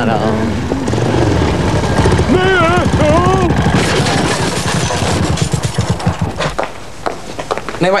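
A motor vehicle's engine running with a rapid, even putter through most of the stretch, fading out near the end. A woman sings a few notes over it early on.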